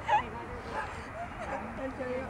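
A single short, high-pitched yelp right at the start, over a background of people talking.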